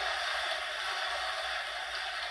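A steady, even hiss that holds at one level throughout, with no voices.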